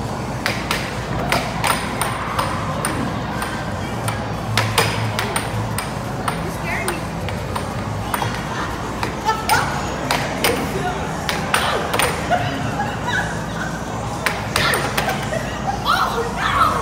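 Air hockey being played: the plastic puck clacks sharply and irregularly off the mallets and the table's rails, over a steady arcade din with background voices.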